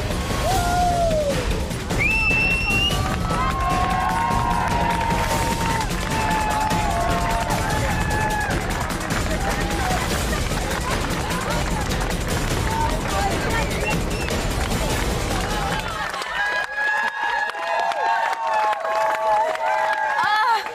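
Rushing, rumbling noise of a rider sliding fast down a long plastic-foil water slide over sand, under background music and shouting voices. About sixteen seconds in the rumble stops, and a crowd cheers and calls out.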